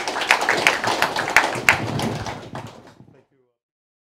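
Small audience applauding, a dense patter of hand claps, cut off abruptly about three seconds in.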